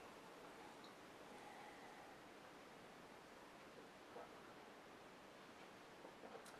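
Near silence: faint, steady room hiss.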